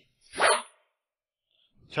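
A single short scoffing laugh, one burst of under half a second.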